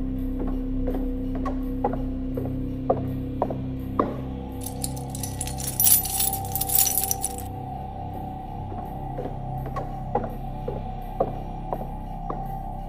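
A bunch of keys jangling for about three seconds near the middle, as a door is locked up, over slow, sustained background music. A clock ticks steadily about twice a second throughout.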